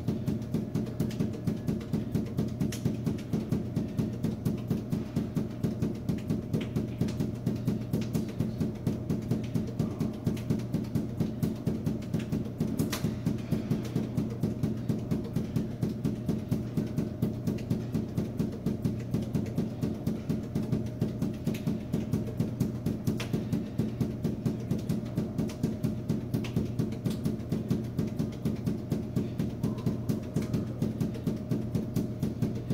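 Juggling balls force-bounced off a hard floor one after another, a steady run of thuds at about four bounces a second, with a steady low hum beneath.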